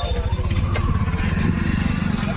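Small auto-rickshaw engine running as the three-wheeler passes close by, a low, rapid engine beat that grows louder to about a second and a half in.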